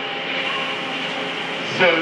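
Steady hum and rumble of factory machinery running, an even noise with a few faint steady tones in it; a man's voice comes back right at the end.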